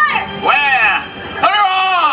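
Speech only: lively called-out voices with strongly rising and falling pitch, one near the start and one about a second and a half in.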